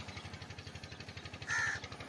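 A bird calls once, a short loud call about one and a half seconds in, over a steady, fast, low pulsing background noise.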